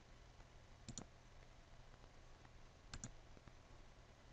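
Computer mouse button clicked twice, about a second in and again about three seconds in, each click heard as a quick double tick of press and release. A faint low hum sits underneath.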